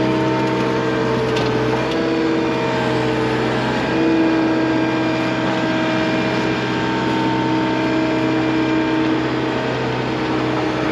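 ASV RT-75 compact track loader's diesel engine running steadily under hydraulic load as the loader arms lift a snow plow attachment, its pitch stepping up slightly about two and four seconds in.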